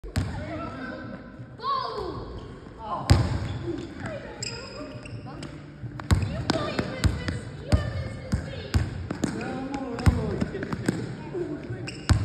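Basketball bouncing on a gym floor, sharp irregular bounces, among children's voices.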